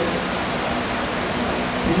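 Steady hiss of background room noise, with no speech, in a pause between a teacher's phrases.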